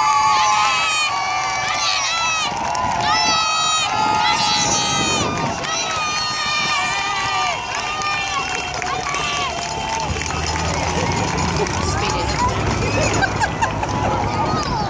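Roadside crowd shouting and calling out, many voices overlapping. The low hum of passing car engines comes in about ten seconds in.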